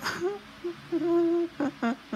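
A person's wordless voice: a breath at the start, then short hummed notes, one held for about half a second in the middle and two quick ones near the end.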